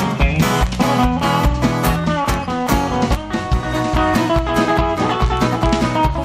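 Live country band playing an instrumental passage: electric and acoustic guitars over bass guitar and a drum kit keeping a steady beat.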